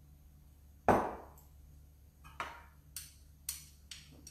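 One sharp knock about a second in, then four lighter clinks of a spoon against a glass jar as tahini is scooped out.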